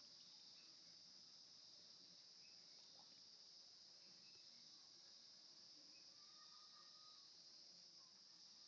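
Near silence: a faint, steady high-pitched hiss.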